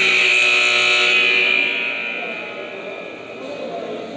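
Gym scoreboard horn sounding once with a steady buzzing tone. It holds for under two seconds, then dies away in the hall's echo. It is the signal that ends a timeout.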